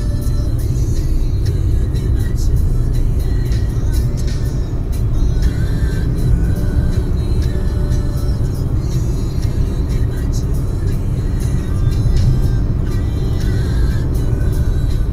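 Steady low road and engine rumble inside a car accelerating to highway speed, about 120 km/h, with music and singing playing over it.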